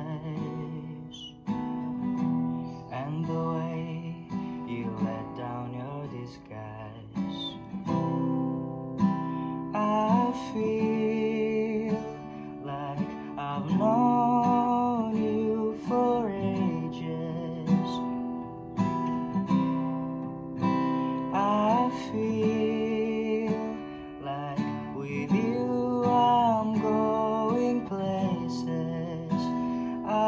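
A man singing with his own acoustic guitar, strummed chords under the sung melody.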